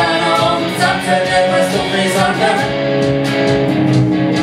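A live song: a woman singing a melody, accompanied by electric guitar playing a steady rhythm.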